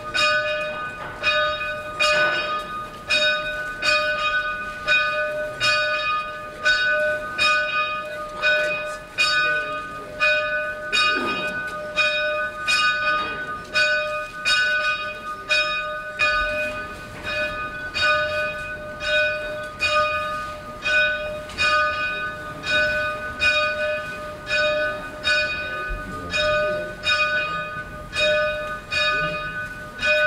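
A single church bell rung by hand from its rope, struck in even, rapid strokes about twice a second without a break.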